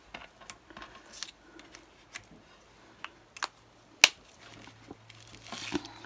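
Small clicks and taps of a marker and card being handled on a cutting mat, with one sharp click about four seconds in, then a brief rustle of card stock being moved.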